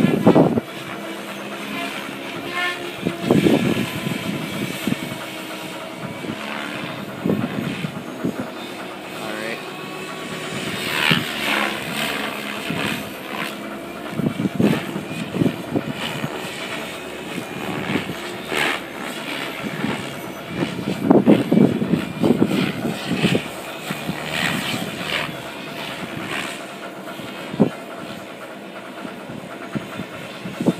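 KDS Agile 7.2 RC helicopter flying aerobatics: a steady whine from its motor and rotors, shifting in pitch, with repeated swells of louder rotor noise as it manoeuvres.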